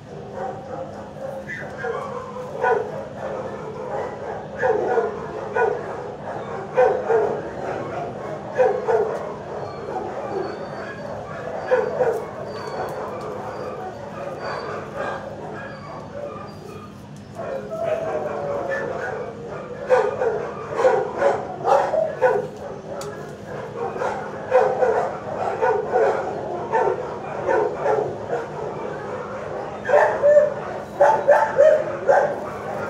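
Shelter dogs barking and yipping in a kennel block, a steady run of barks about once or twice a second, easing off for a few seconds just past the middle before picking up again. A steady low hum runs underneath.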